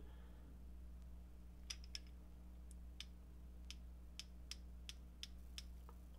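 Nepros 3/8-inch ratchet's pawl clicking faintly over its fine teeth as the handle is slowly turned against light back drag: a dozen or so separate clicks, irregularly spaced at roughly two a second, starting about a second and a half in.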